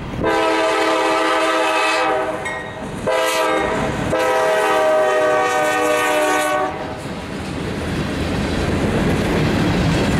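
A GE C40-8 diesel locomotive's air horn sounds a long blast, a short one and a final long one, the closing part of the grade-crossing signal. After the horn stops, about seven seconds in, the locomotive and covered hopper cars roll past, their wheels clicking over the rail joints.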